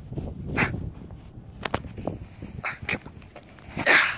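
A soccer cleat being pulled onto a foot on grass: scattered scuffs, rustles and clicks of the shoe and clothing, with low wind rumble on the microphone at the start and a loud rushing burst, like a sharp breath or a rub of the microphone, just before the end.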